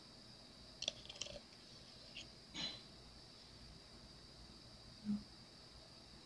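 Quiet room tone with a steady faint high hiss, broken by a few brief soft clicks and light handling noises as small cured resin domes are turned between the fingers.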